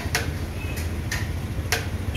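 A series of sharp ticks or taps, about two a second, over a steady low street rumble.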